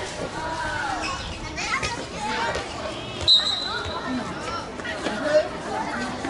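Children's voices shouting and chattering around a basketball game, with one short, shrill referee's whistle blast about three seconds in.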